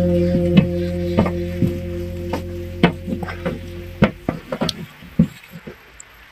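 Background music: a held chord fading out over about four seconds, with irregular sharp clicks and crackles throughout that grow sparser and fainter towards the end.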